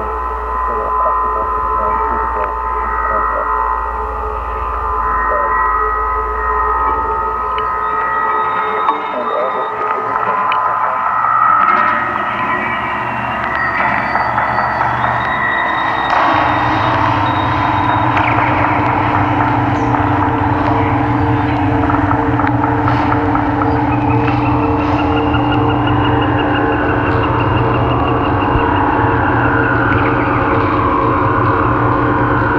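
Wind-driven wire-and-disc sound-collecting instruments strung among trees, giving several steady droning tones layered together. The mix shifts about halfway through as a deeper drone comes in, and a high thin tone joins near the end.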